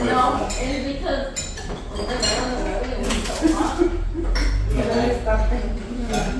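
Plates and cutlery clinking as people eat and serve a meal, with several sharp clinks over ongoing conversation.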